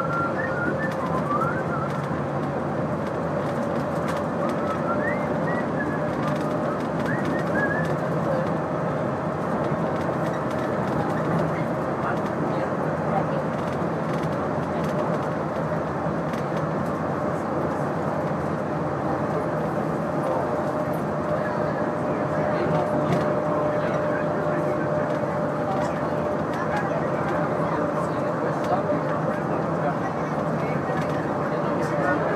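Cabin noise of a Walt Disney World monorail train running at speed: a steady rumble with a steady whine over it. A few short high chirps come in the first several seconds.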